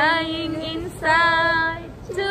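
A woman singing two long held notes of about a second each, the second held steady on one pitch.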